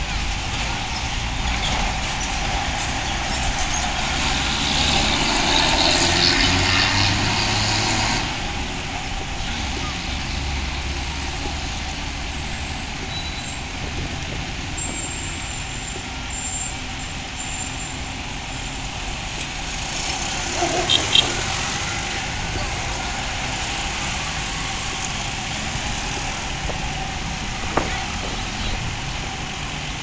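Outdoor street ambience: a vehicle engine running steadily, with people's voices in the background. There are a couple of short sharp knocks, one about two-thirds of the way through and one near the end.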